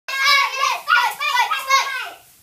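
Young girls' high-pitched voices loudly chanting a cheer in a quick run of short syllables.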